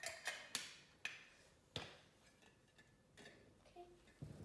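A few sharp clicks and taps, the loudest in the first two seconds, from handling a Funko Soda collectible can and its lid.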